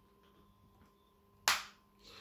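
Faint steady room hum, then a single sharp click about one and a half seconds in that dies away quickly.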